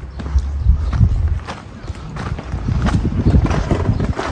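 Wind buffeting the phone's microphone in a heavy, uneven low rumble, with irregular footsteps on dirt ground.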